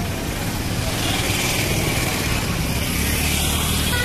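Busy food-stall crowd ambience: people chattering over a steady noisy background, with a traffic-like hum.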